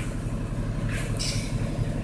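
A low, steady rumble between sung lines, with a short hiss about a second in.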